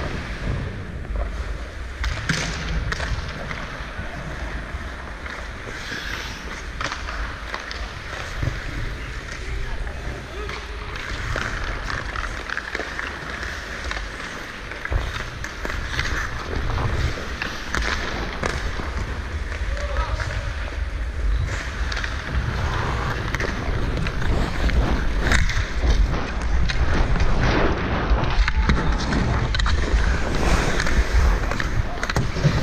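Ice hockey skates scraping and carving on the ice, heard from a player-worn camera with a low rush of wind on its microphone, louder over the last few seconds. Scattered sharp clacks of sticks and puck cut through.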